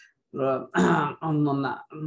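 A man speaking, with a short harsh, noisy vocal sound about a second in.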